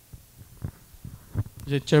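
Several soft, low thumps of a handheld microphone being handled and lowered onto a table. A man's voice starts speaking near the end.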